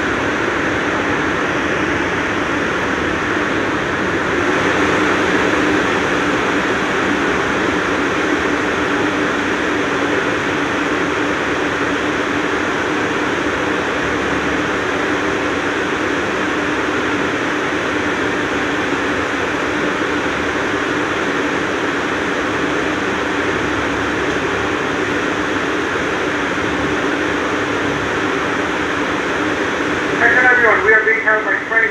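Steady hum and hiss inside an R62A subway car standing in a tunnel, its air conditioning and onboard equipment running.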